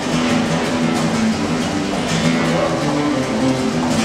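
Acoustic guitar playing a melody of single picked notes, over a steady background rumble of noise.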